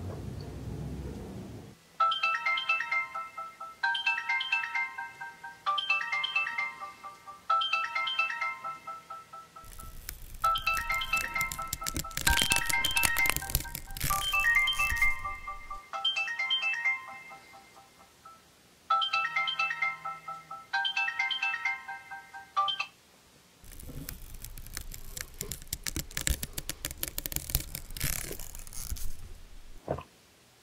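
A wake-up alarm ringtone playing the same short melodic phrase over and over, about two seconds at a time. Twice it is overlaid by a long stretch of loud rustling as the bedding moves.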